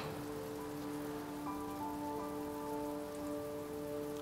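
Soft background score: a sustained low chord, with higher held notes joining about a third of the way in, over a faint even hiss.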